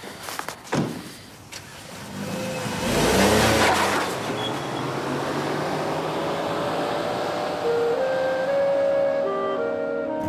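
Two knocks near the start, then a car engine rising and pulling away about two to four seconds in, as dramatic music builds with held, rising notes.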